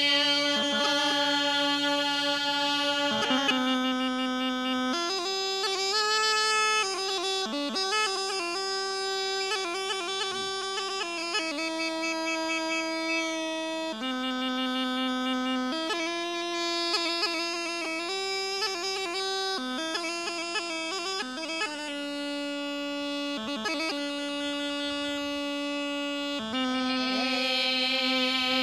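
Rhodope kaba gaida, a large low-pitched Bulgarian bagpipe, playing a folk tune: a steady drone under an ornamented chanter melody that steps between notes. A woman's held sung note ends about three seconds in.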